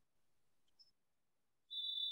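Near silence, then near the end a single steady, high-pitched electronic beep lasting just under a second.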